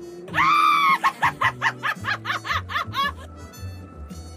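A high-pitched villainous cackle: one long held cry, then a rapid string of about nine 'ha's that ends about three seconds in. Background music with low bass notes runs underneath.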